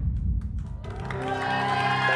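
TV show transition sting: the tail of a deep boom and a few sharp clicks, then studio theme music comes in under a second in, with long held notes.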